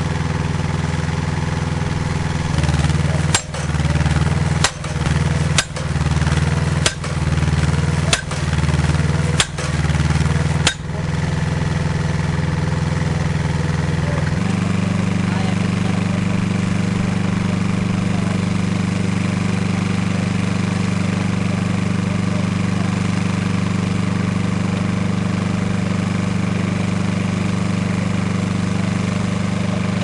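Dando Terrier drilling rig's engine running steadily, with seven sharp strikes about a second and a quarter apart as its percussion hammer drives the casing into the ground. Soon after the strikes stop, the engine settles to a different steady note.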